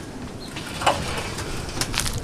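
Footsteps: a few sharp steps, the loudest about a second in and two more near the end.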